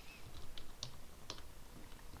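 Computer keyboard typing: a few separate keystrokes at uneven intervals as a word is typed.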